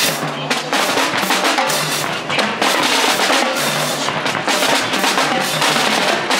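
Marching drumline playing a cadence: snare drums in rapid strokes over bass drums and cymbals, loud and steady throughout.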